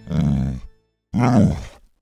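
Two short, low-pitched vocal sounds with a moment of silence between them, the second falling in pitch.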